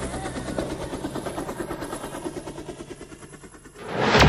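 Helicopter rotor chopping in a fast, even beat, fading gradually away.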